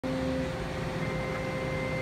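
Steady outdoor machinery hum with a few held tones, a higher whine joining about halfway through.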